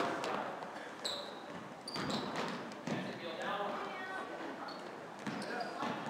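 A basketball being dribbled on a hardwood gym floor, a sharp bounce roughly every second, with voices in the background.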